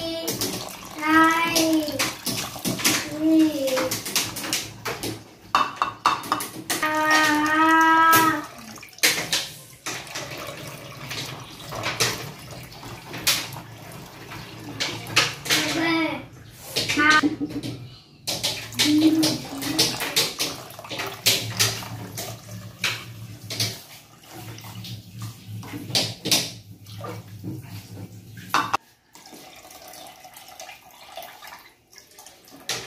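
Water poured from a plastic measuring cup onto rice in an aluminium rice-cooker pot, cup after cup, with splashing and light knocks of the cup against the pot. A child's voice hums in the first half, and a low steady hum stops shortly before the end.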